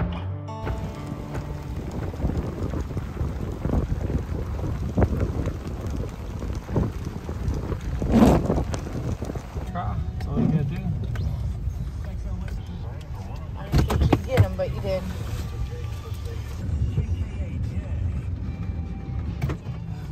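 Truck driving slowly over rough pasture, heard from inside the cab: a steady low engine and road rumble with occasional knocks and jolts, and a louder burst about eight seconds in.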